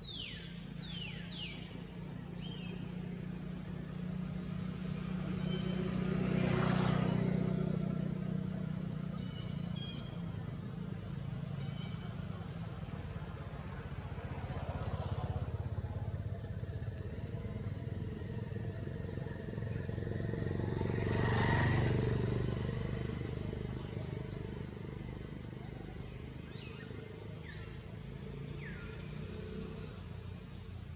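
Two motor vehicles passing at a distance, their engine hum swelling and fading, one about seven seconds in and another about twenty-two seconds in. A few short, high, falling calls sound over them near the start and near the end.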